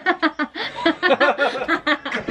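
A girl laughing in a fast run of short bursts, several each second.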